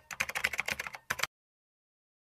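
Rapid computer-keyboard typing sound effect, a quick run of key clicks that stops about a second and a quarter in.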